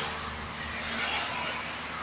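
Outdoor background noise: an even hiss over a faint low hum, with no distinct event.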